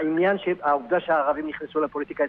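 Speech only: a man talking, in studio radio talk.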